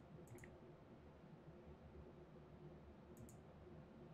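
Near silence broken by faint computer mouse clicks, in two quick pairs: one just after the start and one about three seconds in.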